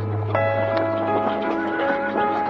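Background music with a horse whinnying about a second in, over the clip-clop of hooves.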